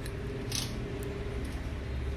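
Perm rods being handled in the hair: a brief plastic rustle about half a second in and a light click about a second in, over a steady low hum.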